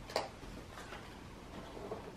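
Faint handling of a cardboard advent calendar box: one soft click shortly after the start, then only low room noise.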